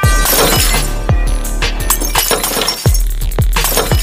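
Electronic intro music with a deep bass and a kick drum about twice a second, overlaid with a glass-shattering sound effect, loudest as it bursts in at the start.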